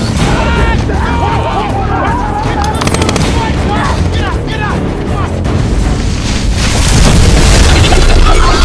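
Action-film soundtrack of a giant robot scorpion bursting out of the sand: continuous deep rumbling booms under music, with shouts, and a short rapid burst of gunfire about three seconds in.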